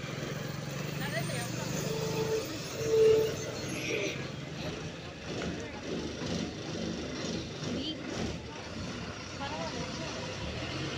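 Bus driving past close by with its diesel engine running. Two short beeps about two and three seconds in, the second the loudest moment.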